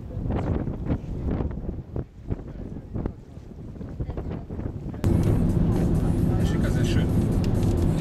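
Wind buffeting the microphone in uneven gusts. About five seconds in, an abrupt cut to the steady low drone of road and engine noise inside a moving car's cabin.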